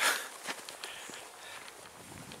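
Footsteps of a person walking on dry grass and earth: a series of light, irregular crunches and rustles, after a short rush of noise at the start.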